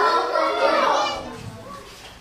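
Children in an audience talking and calling out over each other, dying down about a second and a half in.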